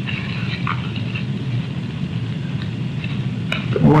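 Steady background room noise: a constant low hum with a hiss over it and a few faint small ticks.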